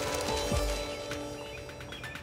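Background music for a scene change: held notes over a steady kick-drum beat.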